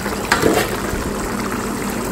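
Red mullet and tomato sauce simmering in a large aluminium pan, bubbling steadily.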